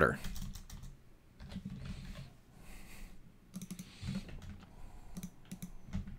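Computer keyboard typing: scattered keystrokes in short runs with pauses between them, fairly quiet.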